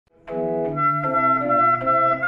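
A small wooden chest organ playing sustained chords, with a woodwind holding a melody line above; the music starts suddenly a moment in and moves in held, steady notes.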